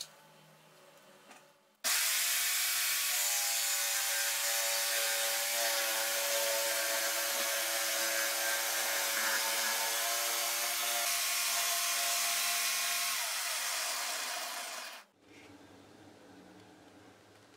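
Corded jigsaw cutting through OSB board, its blade sawing steadily as it is swung around a circle jig. The saw starts suddenly about two seconds in, runs with a steady motor whine under the cutting noise, and winds down and stops near the end.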